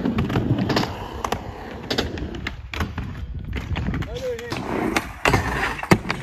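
Skateboard wheels rolling on a concrete skatepark floor, with several sharp clacks and knocks from the board along the way.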